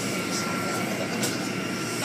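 Car wash machinery running steadily: a continuous whooshing noise with a faint steady high whine, and brief hisses about half a second in and again near the middle.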